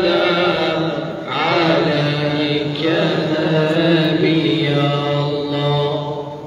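A man's voice chanting a religious recitation in long, held, ornamented phrases, with short breaths between them about one and three seconds in.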